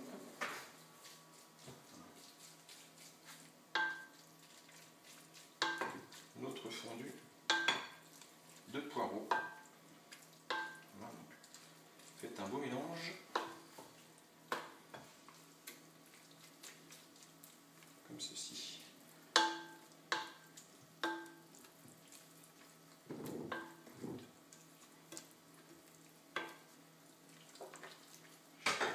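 Wooden spoon stirring a thick, wet leek and hazelnut mixture in a glass bowl: soft, irregular squelching and scraping, with a dozen or so light knocks of the spoon against the glass that ring briefly.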